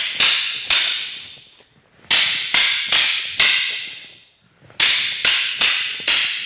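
Two short sticks clacking together in a partner drill: sharp strikes in sets of four, about 0.4 s apart, with a pause of over a second between sets, each strike ringing briefly in the room.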